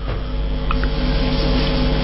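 A steady hum with several held tones, cutting in suddenly with a click.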